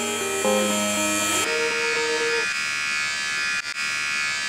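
Electric hair clippers buzzing steadily under background music; the music's notes stop about two and a half seconds in, and the buzz carries on.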